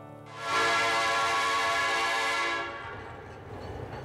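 A train whistle sounding one long blast of about two seconds that then fades out, followed by a low rumble.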